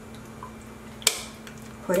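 Kitchen containers being handled: one sharp clack of a dish or tub about a second in, followed by a few faint clicks, over a steady low hum.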